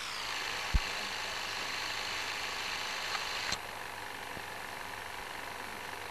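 Steady hiss and faint hum of an old optical newsreel soundtrack carrying no speech. There is a click about a second in, and a sharp crackle a little past halfway, after which the noise drops slightly in level, as at a splice.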